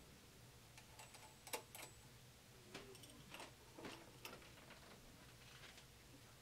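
Faint, scattered clicks and light metal taps of a metal pulley being slid onto a lathe spindle and a small wrench working on its hub.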